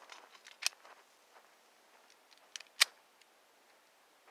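Mostly quiet, with a few faint, short clicks and scuffs from a man moving into position with a pistol in hand; the clearest click comes nearly three seconds in.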